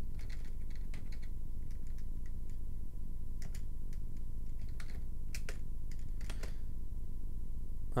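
Computer keyboard being typed on: scattered keystrokes, some in quick little runs with pauses between, as a short terminal command is entered. A steady low hum runs underneath.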